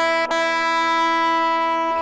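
Low E string of a Harley Benton TE-90 electric guitar plucked twice near the start, then left ringing on one steady note while it is checked against a tuner.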